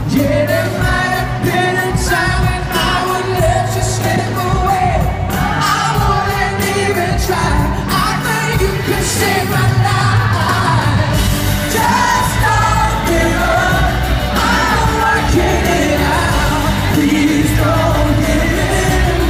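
Live pop concert heard from within the crowd: a male lead vocalist singing into a handheld microphone over a full band with a steady drum beat, through the arena sound system.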